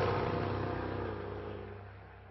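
Jaguar F-Type R Coupé's supercharged V8 engine, loudest at the start and then fading away over about two seconds, its note dropping slightly as it goes.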